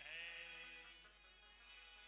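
A man's voice holding a long, slightly wavering sung note in a Hindu devotional song (bhajan), over sustained harmonium and keyboard chords; the note enters with a small downward bend and fades within about a second.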